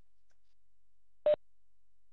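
A single short electronic beep about a second into an otherwise quiet stretch: one steady mid-pitched tone lasting about a tenth of a second.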